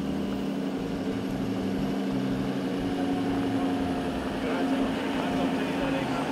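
Lenco BearCat armoured police truck's engine running steadily as the vehicle rolls slowly forward on a dirt track, a constant low hum.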